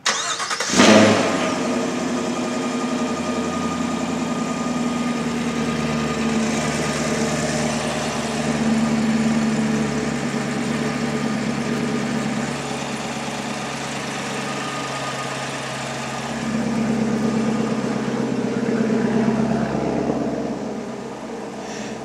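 A 2017 Chevrolet Camaro SS's 6.2-litre LT1 V8 starting, with a brief flare in revs about a second in, then settling into a steady idle with a couple of mild swells in level.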